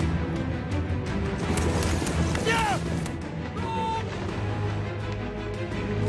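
Dramatic film score with a heavy, pulsing low end. A brief shout falls in pitch about two and a half seconds in, and a held call follows a second later.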